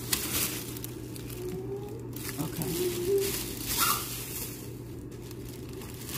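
Clear plastic packaging crinkling and rustling in several short bursts as it is handled and pulled open.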